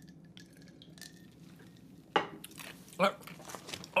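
A man's voice: two short untranscribed utterances about two and three seconds in, after two quiet seconds.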